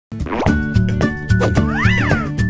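Upbeat intro jingle with a steady beat, laid with cartoon sound effects: a bubbly pop as it starts and a rising whistle-like glide near the end.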